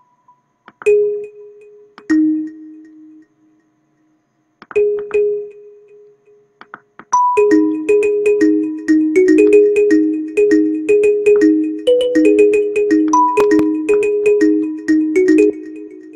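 Software kalimba (the Purity plugin's Kalimba preset) in FL Studio: a few single notes sound one at a time as they are placed in the piano roll, then from about seven seconds in the kalimba pattern loops, a bouncing two-note figure with an occasional higher note, over fast sharp ticks.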